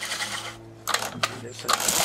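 Recoil starter on a 15 hp Johnson outboard being pulled twice, the rope and starter mechanism rattling as the engine turns over without firing. The pull feels rough, which the owner puts down mostly to the starter.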